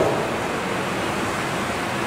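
A steady, even hiss of background noise, with no distinct event in it.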